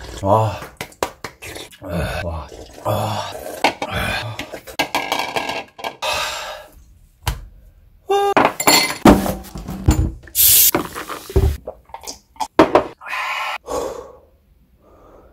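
Knocks and clinks of dishes and cutlery: a silicone spatula scraping and tapping around an emptied bowl on a counter. In the first half this comes under vocal sounds, and most of the clatter falls in the second half.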